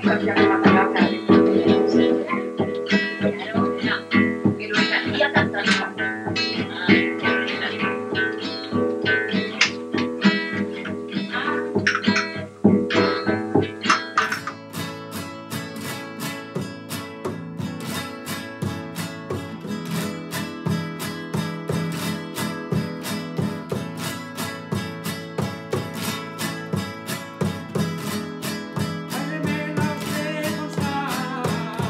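Acoustic Spanish guitar strummed in a steady rhythm, playing the traditional toque 'por la estudiantina' in the A major position and standard tuning. The first half is a duller old field recording. About halfway through it switches to a clearer, brighter recording of the same strummed toque.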